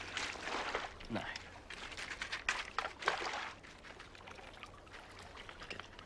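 Gentle water lapping and trickling against a pebble shore, with small scattered splashes.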